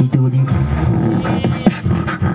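Solo beatboxing into a handheld microphone. A held low hummed note gives way to a deep sustained bass drone with a wavering high overtone, then sharp percussive hits come in near the end.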